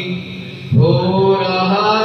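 Male voice singing an Urdu naat in a slow, drawn-out melodic line over a steady low drone. The voice drops away briefly, then comes back in a little under a second in, gliding up into a long held note.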